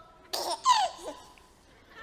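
A short, baby-like delighted giggle: a breathy burst followed by a falling, squealing cry, imitating a child excited by a new toy.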